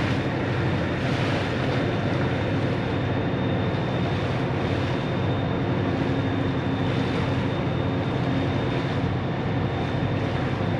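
Paddle-wheel riverboat under way across the river: a steady low mechanical drone with no change, over a haze of wind and water noise and a thin steady high tone.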